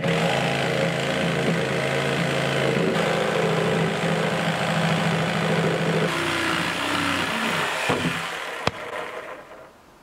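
Power saw cutting through a six-by-eight timber beam. It starts abruptly and runs steadily, its pitch shifting as the blade works through the wood, then winds down with a falling pitch and stops, with one sharp click near the end.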